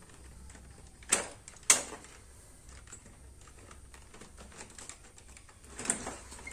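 Plastic parts of a Kyocera copier being fitted by hand: two sharp clicks about half a second apart, the second louder, then light rattling as the parts are handled and another knock near the end.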